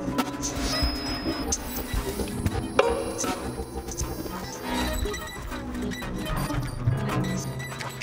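Contemporary ensemble music for 23 players and electronics: a dense, shifting mix of held instrumental tones, noise and many short, sharp strikes and clicks, with a strong accent a little under three seconds in.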